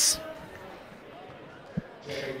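A single basketball bounce on a hardwood gym floor near the end, a short, sharp thump over quiet gym ambience.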